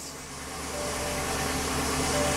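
C8 Corvette's LT2 V8, fitted with ported heads and an SS2 cam, idling steadily just after its first start on a fresh flash tune with only idle changes made. It grows somewhat louder over the two seconds.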